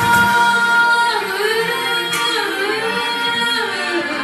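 A Japanese pop song: a woman sings long, held notes over a sparse backing, with the bass dropping out at the start.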